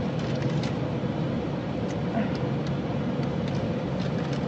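Steady hum of a parked car idling, heard from inside the cabin, with a faint steady tone running through it and a few light paper rustles from a receipt being handled.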